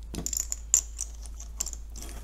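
Small plastic counting chips clicking against one another and the tabletop as they are gathered up by hand: a scatter of light clicks, the loudest about three-quarters of a second in.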